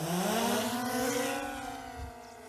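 DJI Mavic Air 2 drone's motors and propellers spinning up for takeoff: a rising whine that settles into a steady buzz, growing softer as the drone climbs away.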